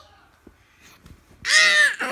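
A toddler's short, high-pitched wordless squeal about one and a half seconds in, its pitch arching up and then down.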